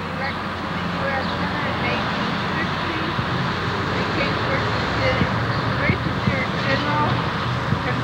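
Steady street traffic noise, with faint voices in the background.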